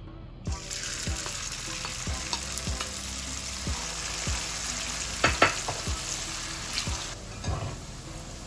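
Cooked egg noodles frying in hot oil in a wok: a loud sizzle starts suddenly about half a second in, as they hit the oil, and runs on until near the end. A couple of sharp clacks of the spatula against the wok come a little past the middle.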